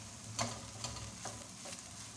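Ampalaya with egg and dried shrimp sizzling in a nonstick pan as a spatula stirs it. About four short scrapes and taps of the spatula against the pan come over the steady sizzle.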